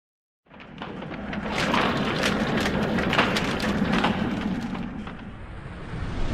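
Animated intro sound effects: a run of sharp hits and swishes over a steady low rumble. It sets in half a second in, is busiest in the middle and eases off toward the end.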